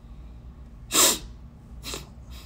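A man's sharp burst of breath close to the phone's microphone about a second in, a short hissing blast like a stifled sneeze, followed by a softer breath near the end.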